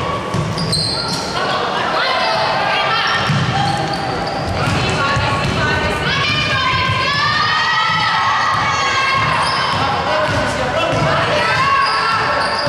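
Basketball dribbled on a hardwood court, the bounces echoing in a large gym hall, with players' voices calling out over them.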